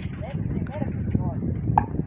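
Voice sounds from an animated cartoon playing on a laptop, in short rising-and-falling syllables without clear words.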